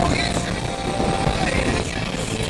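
A car engine running at track speed, heard from inside the cabin with road noise.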